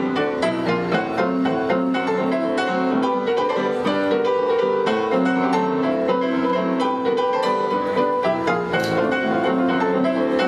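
Solo ragtime played on an acoustic grand piano, with a steady stream of quick, busy notes.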